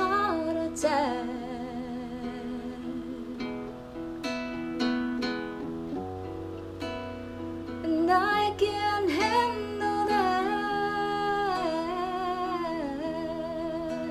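Acoustic guitar played under a woman's voice singing long held notes with vibrato. The voice comes in about a second in and again from about eight to thirteen seconds, with a stretch of guitar alone between.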